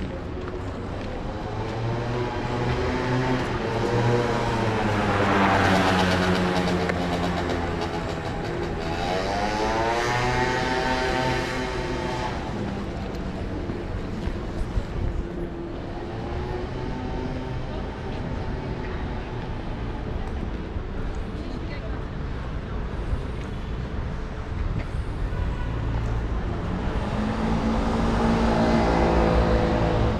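Street traffic: the engines of passing motor vehicles, each rising and then falling in pitch as it goes by, about four times, over a steady low rumble of city traffic.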